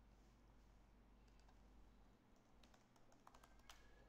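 Faint typing on a computer keyboard: a quick run of key clicks starting about two and a half seconds in, the loudest near the end, over near-silent room tone.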